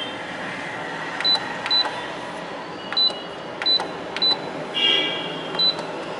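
Key beeps from a Canon imageRunner 2002N photocopier's control panel: about six short, high beeps, each with a faint key click, as the arrow keys are pressed to scroll through a menu, over steady background noise.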